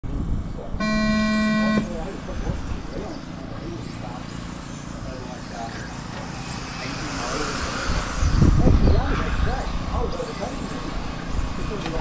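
A steady start horn tone sounds for about a second near the beginning, and then 1/10-scale RC touring cars run around the track, their whine swelling and sweeping as they pass. A low rumble, the loudest sound, comes about eight seconds in.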